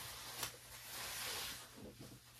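Rustling of soft white packing material being pulled and moved around inside a cardboard box, with a short click about half a second in.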